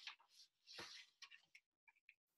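Near silence with a few faint, brief clicks and a soft rustle.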